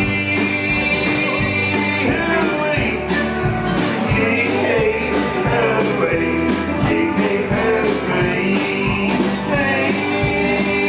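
Live country band playing an instrumental passage: drum kit keeping a steady beat under electric bass, acoustic and electric guitars and a pedal steel guitar, with gliding pitched lines in the middle.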